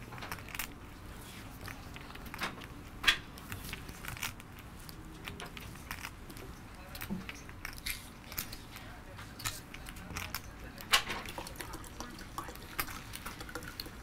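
Poker chips clicking as a player fingers and riffles her chip stacks at the table, a scatter of light irregular clicks with two sharper clacks, about three seconds in and near eleven seconds in.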